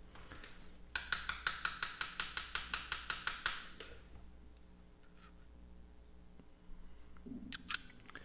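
Metal fly-tying hair stacker tapped rapidly on the bench to even the tips of deer hair: a quick, even run of about seventeen sharp ticks with a high metallic ring, starting about a second in and lasting about two and a half seconds. A couple of small clicks follow near the end.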